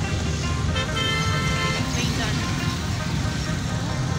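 Steady low rumble of a car's engine and tyres heard from inside the moving car's cabin, with a brief held tone of under a second about a second in.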